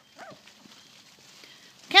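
Labrador dogs moving about on leaf-covered ground, with faint scattered steps and a brief faint falling yelp near the start; a woman's high-pitched voice cuts in at the very end.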